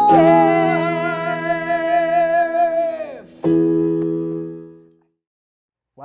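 End of a song on keyboard and electric guitar: a held sung note over a sustained chord, the voice falling away about three seconds in. Then a final chord is struck and rings out, fading to silence about a second and a half later.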